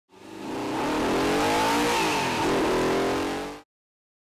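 A car engine revving under hard acceleration over road and wind noise. It fades in quickly, its pitch climbs and then drops about halfway through, blips once more, and the sound cuts off abruptly just before the end.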